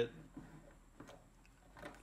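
Faint, scattered clicks and light taps as the battery's cell packs in their plastic holders are handled and set down on a bench, about three small ticks over two seconds.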